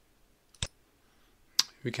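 A single sharp computer mouse click a little over half a second in, in a quiet room. A second short tick comes just before a man's voice starts near the end.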